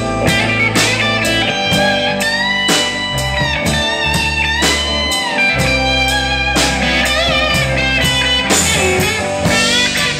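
Live rock band playing a slow blues-rock song: an electric guitar plays a lead line of long, bent notes that slide up and down, over steady bass and a regular drum beat.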